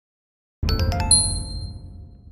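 Short logo jingle: after about half a second of silence, a quick run of bright plinking notes over a low bass swell, ending on a ringing chime that fades out.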